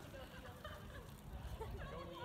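Faint, indistinct voices of several people talking, over a steady low rumble.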